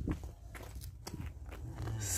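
Steps on a paved road: a Holstein cow's hooves and a handler's footsteps, a few faint scattered taps over a low rumble.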